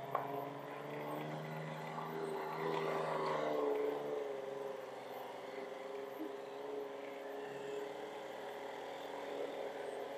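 A vehicle engine runs steadily while driving along a rough lane. Its pitch rises and falls a little about three seconds in, then holds even. There is a short knock right at the start.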